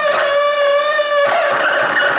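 A circuit-bent radio cassette player giving a loud, sustained electronic feedback squeal: one steady pitched tone with overtones that wavers slightly and shifts pitch about a second in.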